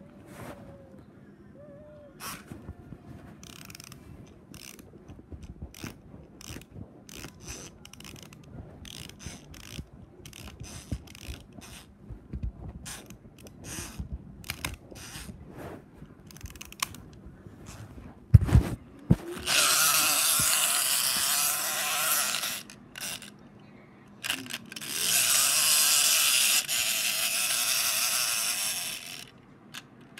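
Close handling noise: a run of small clicks and knocks, a heavy thump about 18 seconds in, then two long stretches of loud rubbing right against the microphone, each lasting several seconds.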